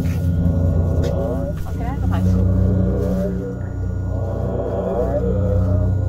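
Yellow jackets buzzing around their nest: a steady low drone of many wings. Twice, wasps pass close and their buzz wavers up and down in pitch.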